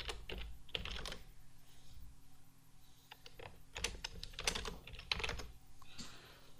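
Typing on a computer keyboard: two short runs of keystrokes with a pause of about two seconds between them.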